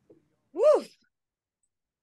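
A woman's single short, wordless exclamation about half a second in, its pitch rising and then falling.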